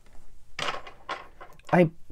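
A few short clicks and rattles of small tools being handled at a stopped sewing machine, three or so between about half a second and a second and a half in.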